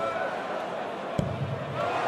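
A steel-tip dart striking a bristle dartboard, one sharp thud about a second in, over the steady murmur of a large crowd.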